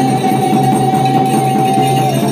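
Procession music: a double-headed barrel drum played by hand, with a single high note held steady for about two seconds that wavers again just after.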